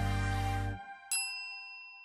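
End-of-video jingle: the music's last chord cuts off just under a second in, then a single bell-like chime rings out and fades away.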